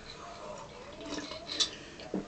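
A person sipping hot green tea from a mug, faint, with a couple of short sip sounds past the middle.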